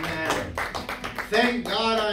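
Acoustic guitar strummed in a quick, even rhythm, with a voice starting to sing over it about halfway in.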